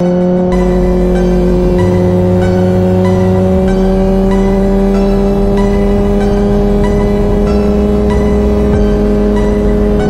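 Sport-bike engine held at steady high revs, its pitch creeping slowly upward. It plays under background music with a bass line that changes note every couple of seconds.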